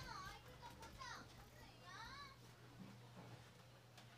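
Near silence: faint distant children's voices over a low, steady hum.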